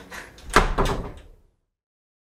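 A door banging shut with a rattling clatter, loudest about half a second in; the sound cuts off suddenly about a second and a half in.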